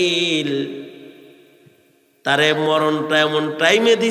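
A man's voice chanting a sermon in a drawn-out, sing-song tone through a microphone and PA. The voice holds a note and fades away over the first second or so into a brief pause. It starts again a little past two seconds in with long held notes.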